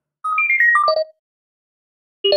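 A short electronic jingle: a quick run of bright, chime-like notes stepping down in pitch, lasting under a second, with a channel-logo sting.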